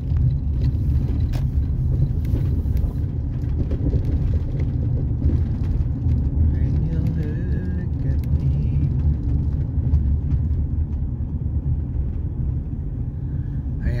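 Steady low rumble of a car's engine and tyres on the road, heard from inside the cabin while driving, with a few faint clicks.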